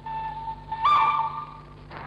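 Recorded train whistle from a musique concrète tape piece: a held whistle tone, joined about a second in by a louder, slightly higher whistle, both cutting off around halfway through over a faint low hum.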